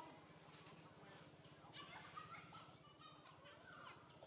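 Faint, short, high-pitched squeaking and chirping animal calls, a few sliding up or down in pitch, with a brief rapid trill about three seconds in, over a low steady hum.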